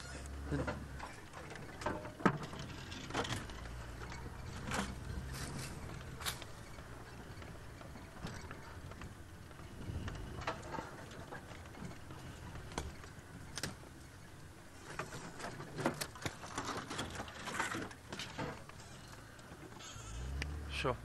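Open safari vehicle crawling off-road through thick dry bush: a low engine hum under frequent short cracks, snaps and knocks from branches and bodywork.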